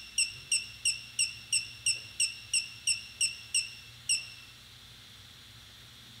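A run of about a dozen short, high-pitched electronic beeps, about three a second, stopping a little after four seconds in. The beeps mark the gimbal controller's IMU accelerometer calibration running.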